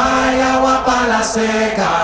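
Background music from a Latin party song: long held notes stepping down in pitch.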